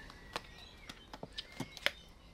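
A clear plastic cup filled with layered acrylic paint being handled and set down on an MDF board: a scatter of light clicks and taps, the sharpest near the end.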